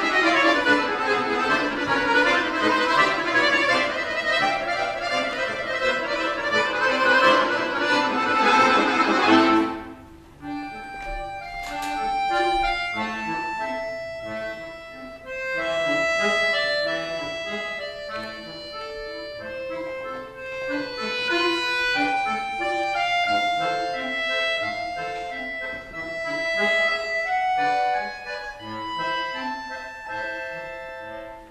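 Accordion music played live: loud, dense full chords that break off about a third of the way in, giving way to a quieter, sparser melody of held single notes over light chords.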